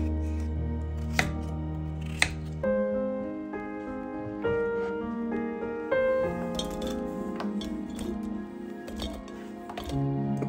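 Instrumental background music. Over it come a couple of sharp knife knocks on a cutting board about one and two seconds in, and later light clatters as chunks of raw potato drop into a glass bowl.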